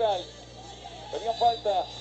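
Speech only: quiet talking at the start and again from about a second in, with a short lull between.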